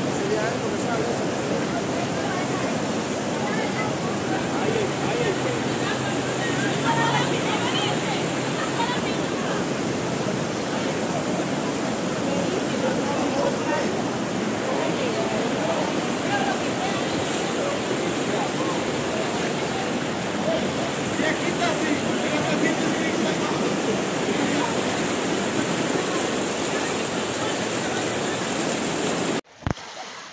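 Fast-flowing floodwater rushing through a street: a loud, steady rush of water that cuts off abruptly just before the end.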